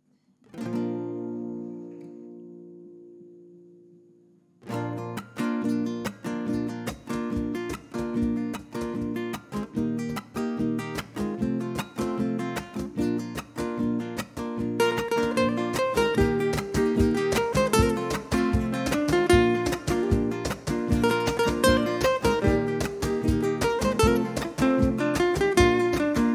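Acoustic guitars playing an instrumental introduction. A single strummed chord rings out and fades, then a few seconds later a steady rhythmic strummed accompaniment begins and grows fuller about halfway through.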